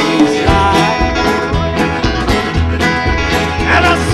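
Live blues band playing a mostly instrumental passage: a resonator (dobro) guitar and an acoustic guitar over double bass and drums, with a steady beat.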